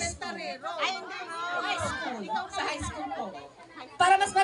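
Several people talking over one another at once, softly and off the microphone: chatter.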